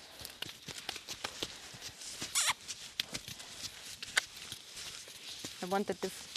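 A horse's hooves and a person's footsteps on a sand arena: scattered soft crunches and ticks as they step around, with a brief swish about two seconds in.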